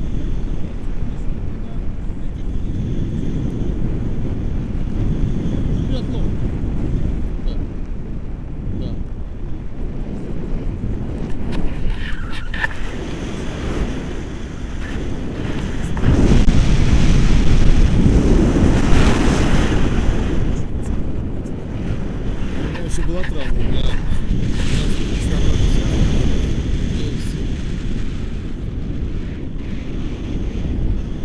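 Wind rushing over an action camera's microphone in flight under a tandem paraglider, a steady low rush that swells louder for a few seconds about sixteen seconds in.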